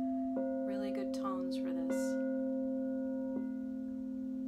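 Crystal singing bowls tuned to C and A, struck with mallets three times about a second and a half apart, each strike renewing a steady, layered ringing tone that sustains throughout.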